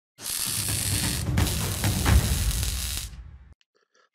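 Intro sound effect: a loud rushing noise over heavy low beats, dropping out for an instant about a second and a quarter in, then fading away after about three seconds.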